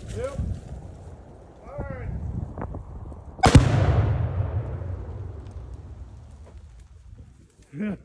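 A Tannerite charge packed into a beaver dam detonating: one sharp blast about three and a half seconds in, followed by a low rumble that dies away over about three seconds.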